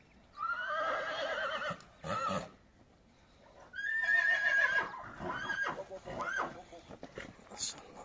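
A Silesian (Śląski) horse whinnying twice: a quavering neigh just after the start, and a higher one about four seconds in that falls away in pitch. There is a short rough burst between the two.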